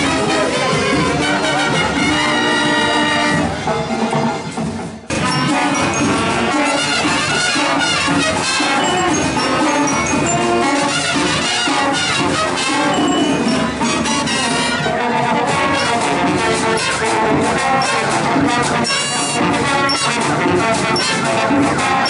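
A marching band's brass section of trumpets and trombones plays a tune with percussion beneath. It briefly drops away about four to five seconds in, then comes back at full strength.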